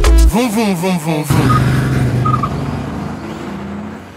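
A hip-hop/Afrobeat song with singing over a beat cuts off about a second in. It leaves the live sound of the indoor RC drift track: electric RC drift cars running, with a steady low hum and background noise, fading out gradually.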